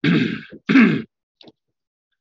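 A man clearing his throat twice in quick succession, the second one slightly louder.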